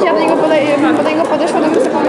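Indistinct chatter: several people, women among them, talking at once.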